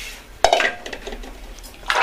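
Stainless steel pots and vessels clanking together as they are washed by hand. There is a sharp metallic clank about half a second in and another near the end, with lighter clattering between.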